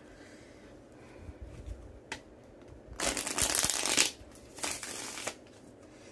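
A deck of tarot cards being shuffled: a single click about two seconds in, then a rustling shuffle of about a second a little past the middle and a shorter one near the end.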